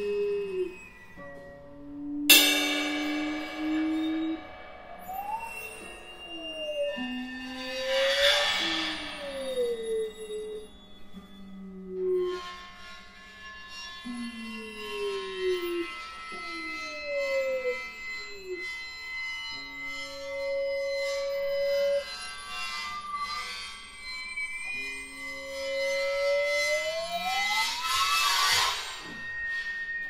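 Free-improvised trio music for piano, percussion and harp: sliding, bending tones that fall and rise in pitch throughout. A sharp struck attack about two seconds in rings on, and swells of rushing noise come around eight seconds in and near the end.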